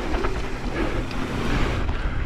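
Steady rush of wind on the microphone over the rumble of mountain bike tyres rolling fast down a dusty dirt trail.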